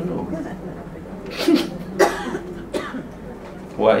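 A person coughing: two short, sharp coughs about a second and a half and two seconds in, then a fainter one.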